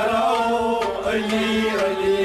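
Kashmiri Sufi devotional song: a male voice sings a long, wavering held line over harmonium and bowed strings, with a few hand-drum strokes about a second in.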